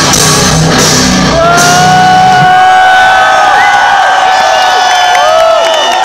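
Heavy metal band playing live at full volume, drums and distorted guitars, with the drums and low end dropping out about two seconds in. Long sustained guitar notes that bend and dip in pitch carry on to the end over a shouting crowd.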